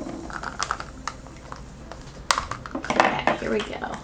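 Small plastic toy capsule being handled and pried open by hand: a run of irregular light clicks and taps of hard plastic.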